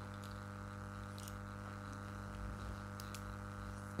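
Steady low electrical hum on the microphone line, with a few faint clicks.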